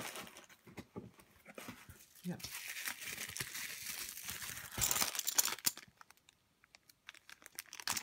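Plastic zip-lock bags crinkling and rustling as they are handled and rummaged through, busiest in the middle and dying away to near quiet for about a second late on.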